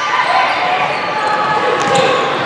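Volleyball rally: players' and spectators' voices calling out over the hall's noise, with a sharp slap of a hand on the ball near the end.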